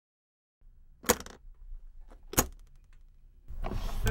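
Two sharp metallic clicks about a second and a half apart, the latches of a hard case snapping open, with a faint low rumble under them. Near the end a rising whoosh swells in.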